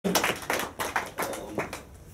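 A handful of scattered hand claps in a small hall, about six sharp, irregular claps that thin out and fade within two seconds.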